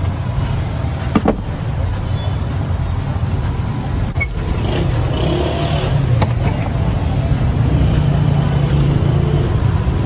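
Steady low mechanical rumble, engine-like, as the loudest sound, growing slightly louder past the middle, with a couple of sharp clicks about a second in.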